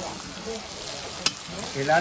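Chicken cari sizzling in a marmite as it is stirred with a metal spoon, with a single sharp click a little past a second in.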